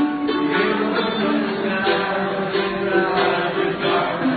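Several voices singing a song together over a strummed acoustic string instrument, with held sung notes above steady strumming.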